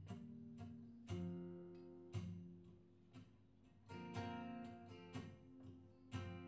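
Acoustic guitars playing an instrumental passage live, picked notes and chords left to ring, with strong strums about one, two, four and five seconds in.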